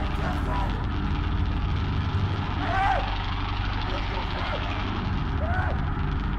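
A low, steady rumbling drone in the stage sound score, with short voice cries that rise and fall in pitch about three seconds in and again near the end.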